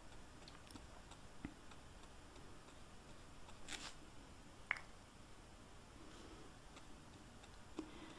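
Near silence with a few faint ticks of a nail-polish brush on paper and against its glass bottle. There is a short scratchy stroke about halfway through as the brush goes back into the bottle, then one sharper click.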